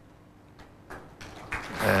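Quiet indoor arena room tone with a faint steady hum, then spectators' applause rising from about a second and a half in as the bowl settles near the jack.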